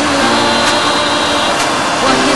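Steady roar of a car driving along a road: engine, tyre and wind noise.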